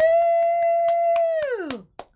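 A woman's voice giving one long howl-like "ooo": it slides up, holds one steady pitch for about a second and a half, then drops away. Light claps tick through it.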